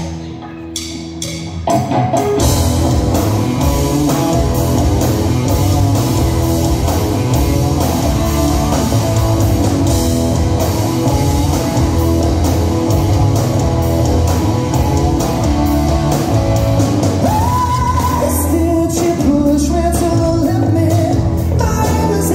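Live rock band playing: electric guitars, bass, drum kit and keyboards. After a thinner opening with a few sharp hits, the full band comes in about two seconds in, and a lead vocal starts singing about three quarters of the way through.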